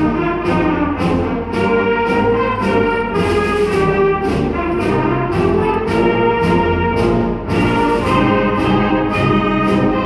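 An eighth-grade symphonic band playing a march, with the brass to the fore over a steady march beat of about two accents a second.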